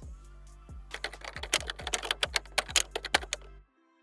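Background music with a steady bass beat, joined from about a second in by a fast run of sharp clicks. Both cut off shortly before the end, leaving only faint held notes.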